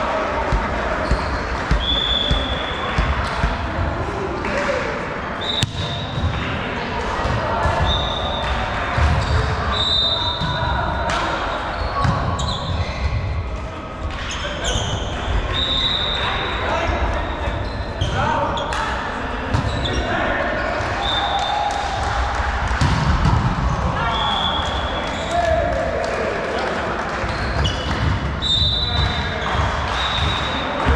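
Indoor volleyball play in a sports hall: the ball being struck and dropping onto the court, sneakers squeaking briefly and often on the floor, and players calling out, with the echo of a large hall.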